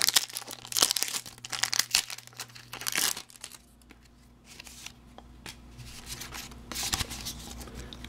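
Foil wrapper of a Pokémon TCG booster pack being torn open and crinkled, with dense crackling for about the first three seconds, then fainter rustling and crinkling.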